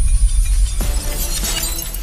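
Glass-shattering sound effect: a deep low boom, then a spray of high tinkling shards about a second in that fades away, over background music.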